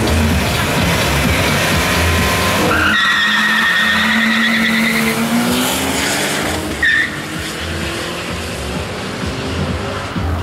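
Drag-race launch of a BMW E46 318i against a Lancia Delta HF, heard over music with a steady beat. About three seconds in, tyres squeal in a rising screech for two to three seconds as the cars pull away with engines revving. A short tyre chirp comes a few seconds later, followed by engine noise climbing again as the cars run off down the strip.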